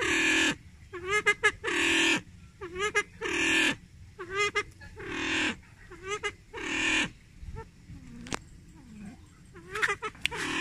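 Silver pheasant calling over and over: short runs of quick notes, each followed by a longer harsh call, repeating every second or two with a brief lull near the end.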